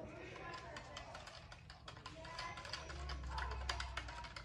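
Plastic spoon stirring salt into a drink in a red plastic cup, clicking and scraping against the cup's sides in a rapid, irregular run of small clicks.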